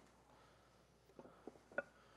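Near silence, broken by three light knocks in the second half as concrete wall blocks are handled and set into place on the wall.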